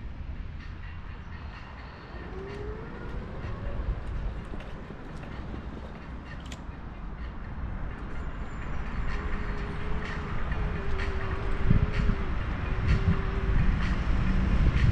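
A scooter rolling over paving stones: a continuous low rumble with many small rattling clicks. It grows louder from about nine seconds in, with a faint steady whine over it for a few seconds.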